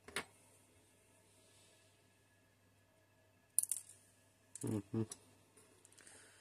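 A few small sharp clicks of tweezers and tiny plastic and metal model parts being handled, the loudest about three and a half seconds in. A short voiced 'oh' follows near the end.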